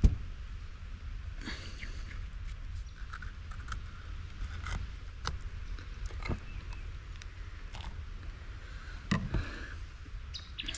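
A knife cutting into a stingray's belly and hands working the guts out: scattered soft scrapes and small clicks over a steady low rumble.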